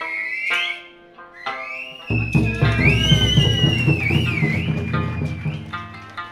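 Okinawan eisa music: sanshin-like plucked notes with a high, wavering melody line above them. About two seconds in, a louder, dense low layer joins and holds until near the end.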